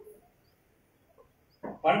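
A man's voice through a microphone: his phrase trails off at the start, then comes more than a second of near silence before his speech resumes near the end.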